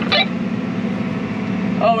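Tractor engine running steadily, heard from inside the cab as a low, even drone. A short burst of voice comes at the very start and a spoken "Oh" near the end.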